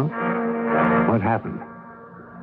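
Radio-drama music bridge between scenes: a held, horn-like chord with a few short sliding notes over it, fading away by about halfway through.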